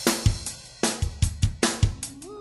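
A song's drum-kit intro: bass drum and snare hits with cymbals and hi-hat, playing a steady beat with a faint pitched note under it.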